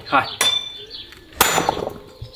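A homemade weapon on a long handle striking a brick: two sharp impacts about a second apart, each with a brief metallic ring.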